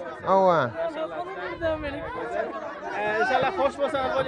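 People talking at once: a loud spoken syllable about half a second in, then several voices chattering in the background.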